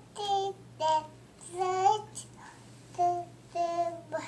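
A toddler babbling in a sing-song voice as he pretends to read aloud to himself: five short, high-pitched wordless phrases with brief pauses between them.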